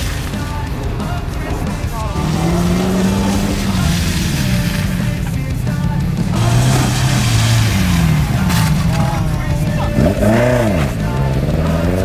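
Car engines running at low speed, their pitch rising and falling as cars creep forward and brake to a stop on wet tarmac. Background music plays alongside.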